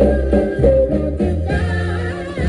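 Soul girl-group record playing from a 45 rpm vinyl single on a turntable: a sung vocal line over bass and band accompaniment, the voice dropping out about a second in while the bass line carries on.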